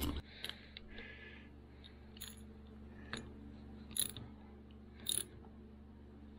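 Hand work on a metal snowmobile carburetor rack: scattered light metallic clicks and taps, with the sharpest two about four and five seconds in, and a short rustle about a second in, as a rack screw is turned in with a hand tool.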